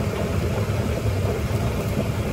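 Pot of water at a rolling boil on the stove: a steady low rumble with a faint hiss.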